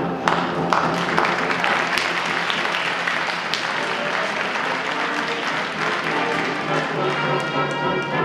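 Audience applauding over a pit orchestra playing scene-change music; the applause thins out and the brass comes forward near the end.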